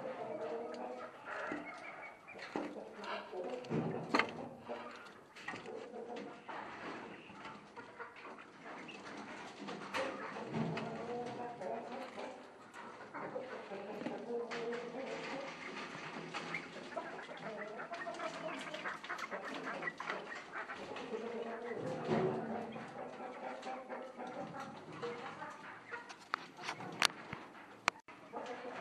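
Caged poultry calling over and over, with scattered sharp knocks and rattles from wire cages being handled.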